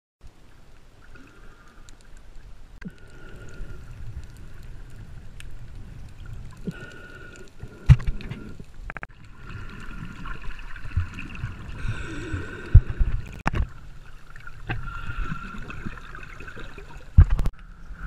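Water heard underwater through an action camera's waterproof housing while snorkelling: a muffled, gurgling wash with a faint steady whine behind it, broken by several sharp knocks on the housing.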